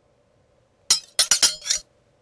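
A quick run of about five sharp, bright clinks, starting about a second in and over within a second.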